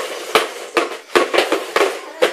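Upturned plastic bowls being slid and shuffled fast across a wooden floor: a quick, irregular run of knocks and scrapes, about six in two seconds.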